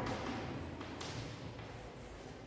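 Chalk scratching and tapping faintly on a blackboard as figures are written, with a sharper scratch about a second in.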